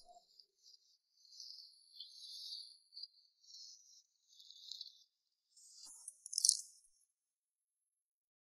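Faint, high-pitched shaker-like rattling in several short bursts over the first five seconds, then a louder swish about six and a half seconds in.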